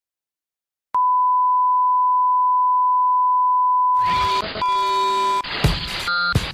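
A steady 1 kHz sine test tone, switched on with a click about a second in and held at one pitch for about four seconds. Near the end, noisy sound with other held tones comes in under it, and the tone then stops.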